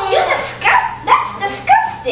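Young children squealing and whimpering in a run of short, high-pitched cries of disgust and protest.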